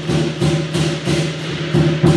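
Chinese lion dance percussion: cymbals clashing about two to three times a second over a drum and a ringing gong, in a steady loud rhythm.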